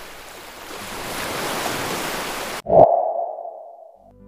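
A swelling rush of noise that cuts off abruptly near the end, followed by a sharp hit with a single ringing tone that fades away: an edited transition sound effect.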